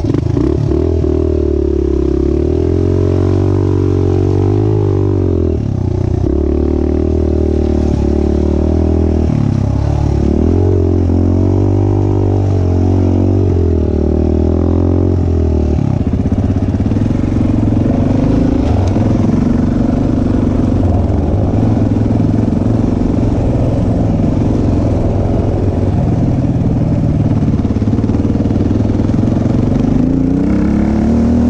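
Off-road motorcycle engine heard from the rider's on-board camera, revving up and falling back again and again as the bike rides the trail. About halfway through the engine note changes to a steadier, more even run.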